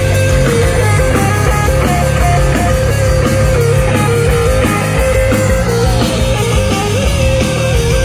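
Rock band playing live in an instrumental passage: distorted electric guitars over bass and drums, with a lead guitar line holding and stepping between high notes.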